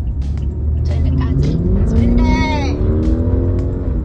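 A speeding car's engine accelerating hard, its pitch rising steadily for about three seconds, over the steady road rumble of a moving car's cabin.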